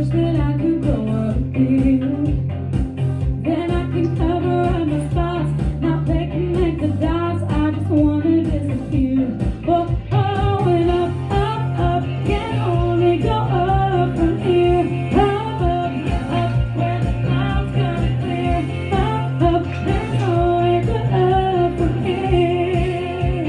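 A woman singing a song with instrumental accompaniment.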